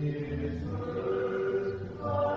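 Slow sacred singing with long held notes, moving to a new note about a third of the way in.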